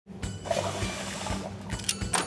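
Aeroplane lavatory toilet flushing behind the closed door, a rushing water sound, followed by a couple of clicks near the end as the door lock slides to vacant.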